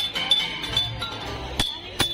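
Hanging metal chime pipes of an outdoor musical-pipe installation being struck: several irregular strikes, each ringing on briefly with a high, clear tone.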